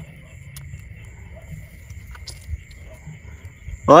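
Quiet handling: soft rustles and a few faint small clicks as hands work a hook out of a walking catfish over dry straw, under a steady high-pitched drone of night insects. A man's voice comes in at the very end.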